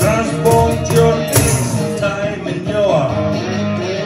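Cigar box guitar and cajon played together live, a steady strummed groove with a pulsing low beat and some sliding guitar notes.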